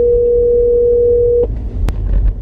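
Ringback tone of an outgoing phone call: one steady tone that cuts off abruptly about one and a half seconds in, the line ringing while waiting to be answered. A sharp click follows near the end, over a low steady rumble from the car.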